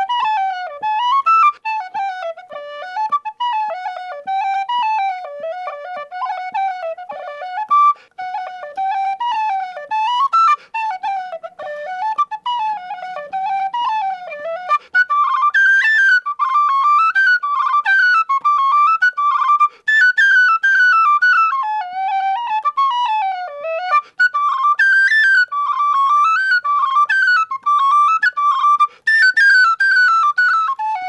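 Tin whistles playing a fast, ornamented solo tune, one whistle after another: a Gary Humphrey whistle, then a Michael Burke whistle and another. There are short breaks where one whistle gives way to the next, and the melody sits higher in the second half.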